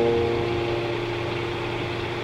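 Relaxing piano music: a held chord slowly fading away, over a steady rain-like hiss.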